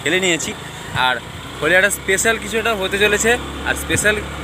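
A man talking excitedly in Bengali, close to the microphone, over a steady low vehicle rumble that grows stronger about a second in.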